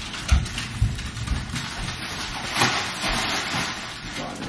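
Footsteps thudding on a hard floor, then the crinkling rustle of a flower bouquet's plastic wrapping as it is carried off, with a louder rustle about two and a half seconds in.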